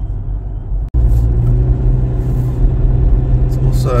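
In-cabin rumble of a Toyota Fortuner being driven: steady low engine and road noise. It cuts out for an instant about a second in and comes back louder.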